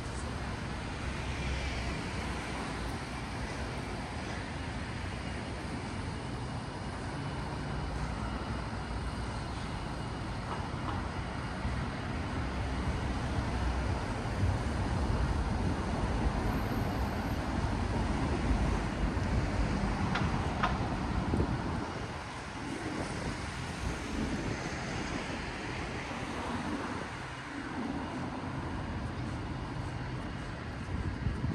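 Road traffic on a city street: a steady rumble of passing cars, vans and buses, swelling in the middle and easing off after about 21 seconds.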